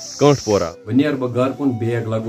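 A steady high chirring of crickets that cuts off abruptly under a second in, with a man's voice over it and continuing after.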